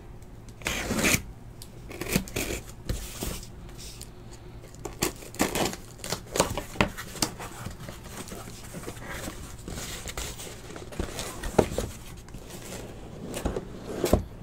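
Cardboard boxes and their packaging being handled and opened: irregular scraping, rustling and tearing in short bursts.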